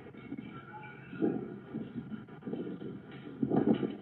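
A house fire heard through a doorbell camera's microphone: a muffled low rumble, with a dull bang about a second in and a quick cluster of bangs near the end.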